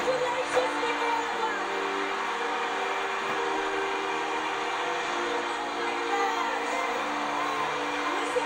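Music with long held notes under a crowd cheering and whooping, heard off a television's speaker.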